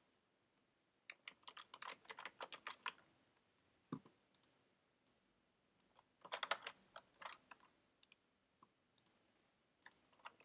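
Faint typing on a computer keyboard: two runs of rapid key clicks with scattered single keystrokes between them, and one heavier knock about four seconds in.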